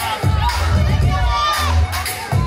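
Crowd of young spectators cheering and shouting over loud dance music with a heavy bass beat.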